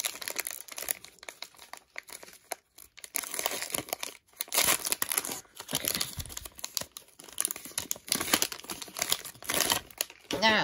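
Plastic wrapper of a trading-card pack being crinkled and torn open by hand, a stubborn wrapper that is hard to get open. Irregular crackling, with short pauses a couple of seconds and about four seconds in.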